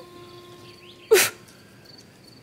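Mostly a pause in conversation over a faint steady hum, broken about a second in by one short spoken word, 'død?' ('dead?').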